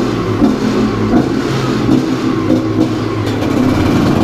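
2005 Gas Gas EC 250 two-stroke enduro motorcycle engine running at a fairly steady throttle while the bike is ridden through a concrete underpass.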